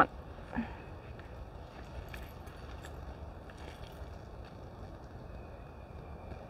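Faint outdoor background: a steady low rumble with a few light, scattered clicks in the middle.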